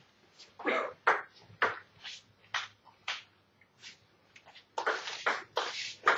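Table tennis ball bounced on the table before the serve, about two sharp clicks a second. Near the end the serve goes in and a quick run of bat and table hits follows in a rally.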